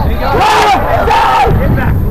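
Several voices shouting and calling out during live soccer play, overlapping, loudest around the middle.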